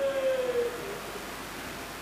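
The tail of a man's held chanted note through a PA, dipping slightly in pitch and fading out within the first second, then a steady faint background hiss until the next line.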